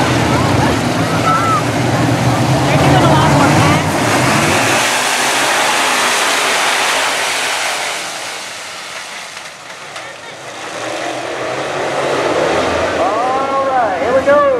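A pack of dirt-track hobby-class race cars racing past, their engines loud for the first several seconds, fading as the field moves away, then swelling again near the end with engine pitch rising and falling as cars go by.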